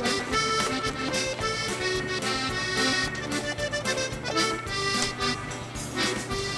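Accordion music: a reedy melody and chords over a steady beat.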